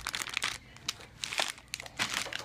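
Plastic bag of a fun-size Peanut Butter M&M's multipack crinkling in short, irregular crackles as it is handled and moved.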